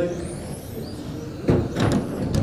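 Electric RC touring cars running on an indoor carpet track, their motors a faint high whine that rises and falls. About one and a half seconds in, a sudden loud noise cuts in.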